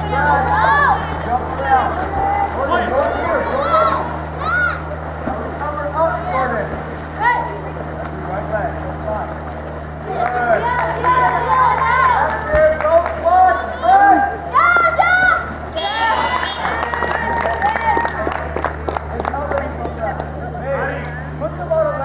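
Several people shouting and calling out over one another, loudest in the middle and later part, with a steady low hum underneath.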